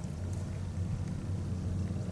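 A steady low rumble under faint background hiss, with no distinct event.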